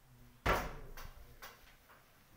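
A single sharp thump about half a second in that fades quickly, followed by two lighter clicks.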